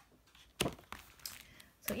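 Pages of a thin softcover book being flipped, then the book closed and set down on a pile of plastic-wrapped sticker packs: a few short paper rustles and taps, the loudest about half a second in.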